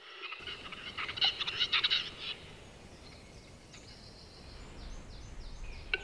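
Male western capercaillie giving its courtship display song: a quick run of dry clicking and scraping notes in the first two seconds. Fainter high, short bird notes follow near the end.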